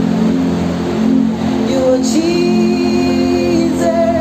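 Live worship music: steady sustained chords from the band, with a singer holding one long note from about halfway through.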